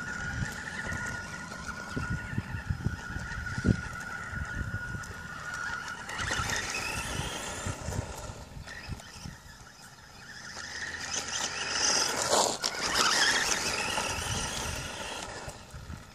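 Electric RC buggy, a Kyosho Sandmaster, driving off with a steady high motor whine for about the first six seconds, over rumble and small knocks from its tyres on concrete and gravel. A louder rushing noise rises about twelve seconds in.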